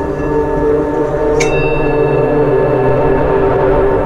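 Ambient meditation music, billed as 432–528 Hz, made of held steady drone tones. A single bell-like strike comes about a second and a half in, and its high tones ring on.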